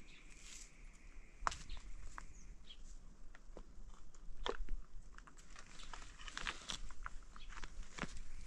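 Scattered light clicks and crunches at an irregular pace, thickest in the second half, with a faint thin high tone in the first two seconds.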